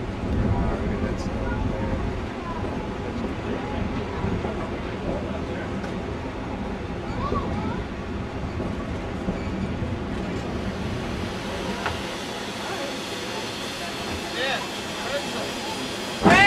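A low rumble from a narrow-gauge steam train nearby, dying down after about ten seconds, with faint voices in the background.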